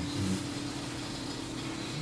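Steady low hum with a faint hiss: room tone.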